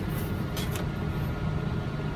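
A steady low mechanical hum, with faint brief handling sounds about half a second in as a copper-clad circuit board is laid onto the foam table of a PCB milling machine.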